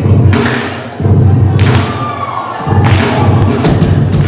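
Live rock band playing loud, with heavy low guitar and bass under drum-kit hits and cymbal crashes. The crashes come about every half second to a second, with a quick run of hits near the end.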